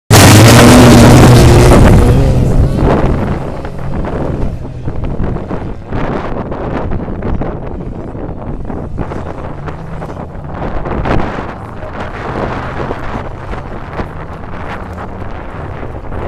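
Several stock cars' engines running hard on a dirt track, very loud and close for the first two seconds as the pack passes, then quieter and farther off. Wind buffets the microphone throughout.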